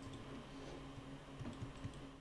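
Faint scattered clicks over a steady low hum, with a few louder soft knocks in the second half.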